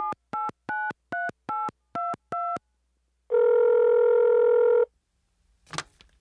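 A phone call being placed: about seven quick touch-tone keypad beeps as a number is dialed, then one long ringing tone on the line. A short click near the end as the call is picked up.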